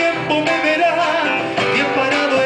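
Live folk band playing, with acoustic guitars to the fore.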